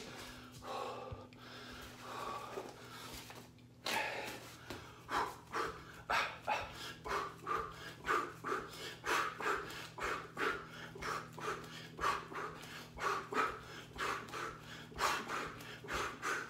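A man breathing hard, with quick sharp exhales about two a second, in time with punches while shadowboxing; the breaths start about four seconds in, over a low steady hum.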